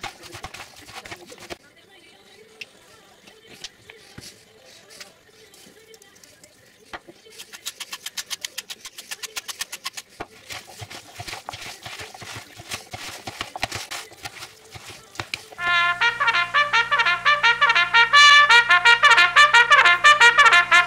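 A spoon and spatula stirring a chopped vegetable salad in a plastic bowl: a run of soft scrapes and quick clicks, briefly fast and regular. About fifteen seconds in, loud trumpet music starts and takes over.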